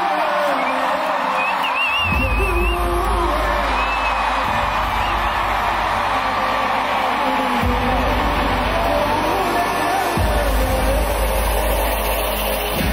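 Live concert intro music heard through a crowd's cheering, screams and whistles, recorded from within the audience. Deep sustained bass notes come in about two seconds in and shift every few seconds under the crowd noise.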